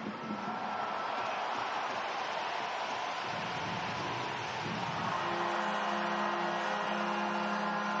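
Ice hockey arena crowd noise, steady and indistinct. About five seconds in, a loud steady horn-like tone in several pitches comes in and holds.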